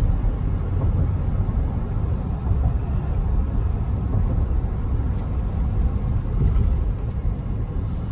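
Steady low rumble of road noise inside a moving car's cabin: tyres and engine running at highway speed.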